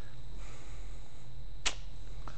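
Room tone of a lecture room: a steady low hum, with one short sharp click near the end.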